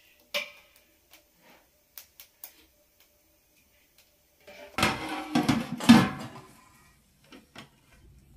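Metal cookware clinking: a ladle taps against a metal pot a few times, then pots, kettle and lids clatter together for about a second and a half, about five seconds in.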